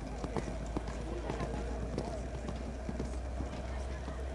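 Hoofbeats of a pony cantering on the sand footing of a show-jumping arena, heard as a string of short muffled thuds, with people talking in the background.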